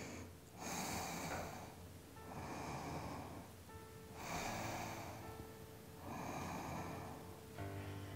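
A woman's slow, deep breathing, audible inhales and exhales making about two full breaths, over faint background music.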